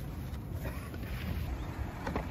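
Wind buffeting the microphone outdoors: a steady, fluctuating low rumble.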